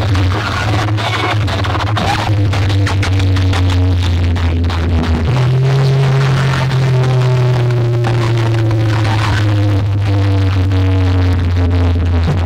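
Loud electronic DJ music played through a DJ sound-box rig of stacked speaker cabinets and horn loudspeakers. Heavy sustained bass notes dominate; they step up in pitch about five seconds in and drop back near the end.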